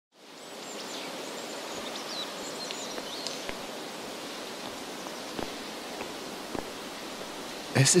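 Outdoor ambience: a steady open-air hiss fading in from silence, with a few short high chirps in the first few seconds and occasional faint ticks. A male singing voice comes in at the very end.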